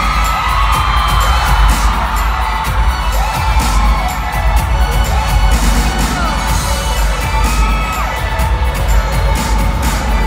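Loud live pop music from an arena sound system with a heavy bass beat, and an audience screaming and cheering over it.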